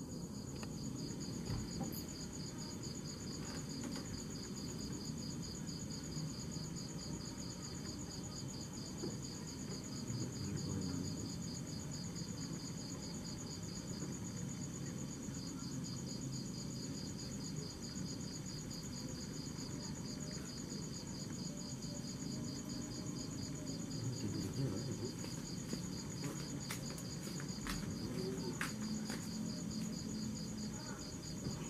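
Crickets chirping in two steady, high-pitched trills over a low background rumble, with a few faint clicks near the end.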